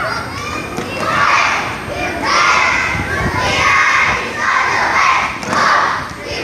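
A group of young boys shouting a team cheer together in loud chanted bursts, about one a second.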